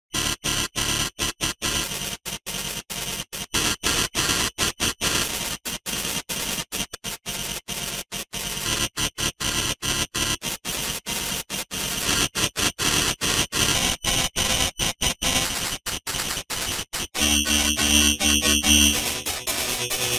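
Heavily distorted, effects-processed logo music reduced to harsh noise, chopped by rapid dropouts many times a second. About three seconds from the end it turns into a stuttering, buzzing chord.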